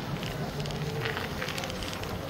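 Street ambience: a steady bed of noise with a few short crackling clicks and faint voices.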